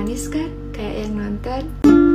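Yamaha C315 nylon-string classical guitar being fingerpicked. Held chord notes ring and fade, and a new chord is plucked sharply near the end, with the soft, sweet tone of nylon strings.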